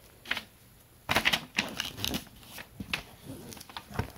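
Paper and cardstock being handled: a stack of oracle cards and their paper pouch rustling, sliding and tapping together in a series of short scrapes and taps.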